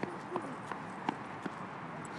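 Footsteps on asphalt: a run of sharp taps a little under half a second apart.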